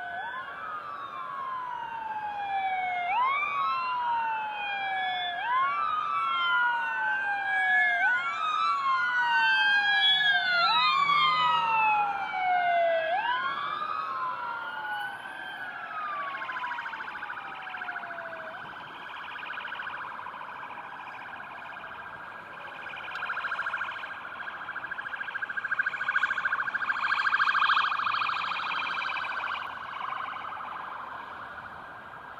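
Sirens of a police escort: several wail at once, each rising and falling about every two seconds and overlapping out of step. From about halfway they give way to a fast warbling yelp, loudest near the end.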